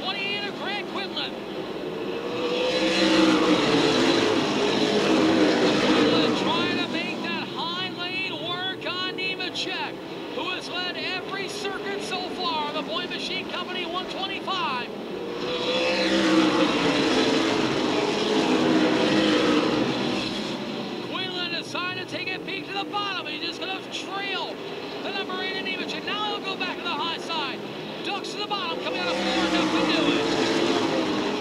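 Field of V8 late-model stock cars racing on a short oval. The engines swell loud as the pack passes about three seconds in and again around sixteen seconds, build once more near the end, and fall back between passes.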